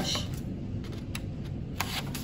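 Scissors cutting a folded sheet of paper: paper rustling with a few sharp snips, the clearest near the end.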